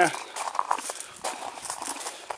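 Footsteps on gravel: irregular crunching steps of a person walking slowly.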